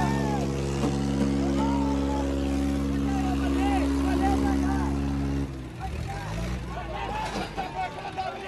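Tractor diesel engines running hard in a steady drone under the load of a tug-of-war pull, cutting back abruptly about five and a half seconds in. Men shout over them throughout.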